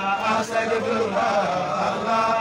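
A man's voice chanting an Islamic dhikr on the name of Allah, in long, held melodic notes with a short break about half a second in.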